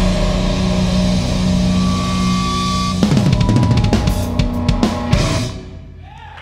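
Close of a live instrumental prog-metal song: a chord held for about three seconds, then a drum-kit fill with bass drum, snare and cymbals that stops abruptly about five and a half seconds in.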